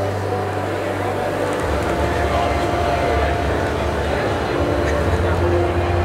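A steady low hum, fuller from about a second and a half in, with muffled voice-like sound and faint held tones over it.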